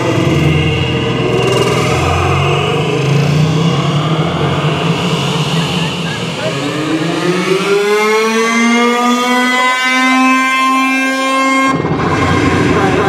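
An engine-like revving sound on the edited soundtrack. From about six seconds in it climbs in pitch and levels off into a steady high tone, then cuts off abruptly just before the end.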